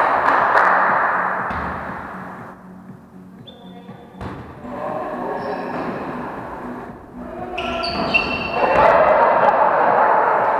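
Volleyball rally in a large gym: several sharp hits of the ball and players' voices calling out, echoing off the hall's hard walls.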